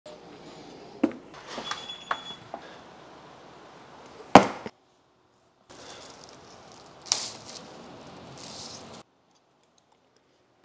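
Packaging being handled: a few light clicks and knocks, a sharp knock about four seconds in, then the rustle of the plastic sleeve as the head unit is lifted out of its cardboard box, with two brighter swishes.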